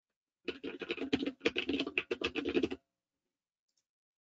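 Computer keyboard typing: a quick run of keystrokes lasting about two seconds, as a panel name is typed in.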